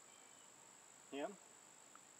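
Faint, steady high-pitched trill of insects in the grass and trees, unbroken throughout, with one brief spoken word about a second in.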